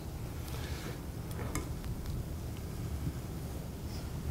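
Onions being stirred in a stainless steel sauté pan with a spatula: a few faint light clicks and scrapes over a low steady hum.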